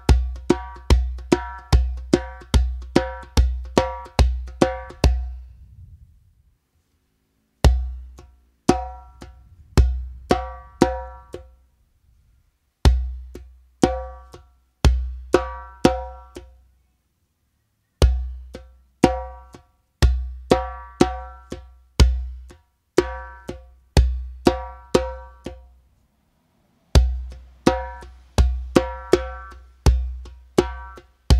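Remo djembe played by hand with bass strokes and slaps in a simple repeating beginner rhythm: a quick shuffle pattern for the first five seconds, then after a short pause a new bass-and-slap phrase repeated in bars with brief breaks between them.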